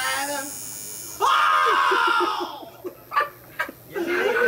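A man crying out in pain while being tattooed: one long, high cry about a second in that slowly falls in pitch, followed by a few short clicks.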